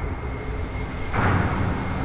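Sound-effect rumble of a burning fireball, a steady deep roar with a whoosh of flame surging up about a second in.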